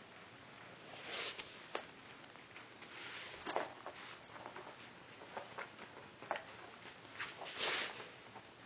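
Foam yoga mat being rolled up by hand, rustling and scuffing in short bursts about a second, three and a half seconds and seven and a half seconds in, with light taps and clicks from a dachshund's paws on the mat in between.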